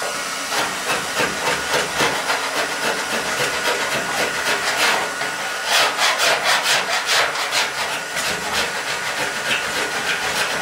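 A heat gun blowing with a steady hiss and a faint whine, while a scraper rasps through the softened old undercoating on a 1970 Dodge Challenger steel fender. The scraping comes in quick repeated strokes, thickest in the second half.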